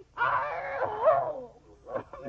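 An animal-like vocal cry from a cartoon character, one wavering, pitched call lasting about a second, over a steady low hum of an old film soundtrack.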